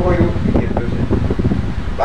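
A low, uneven rumble of wind buffeting the microphone fills the pause, with a word of a man's speech at the very start.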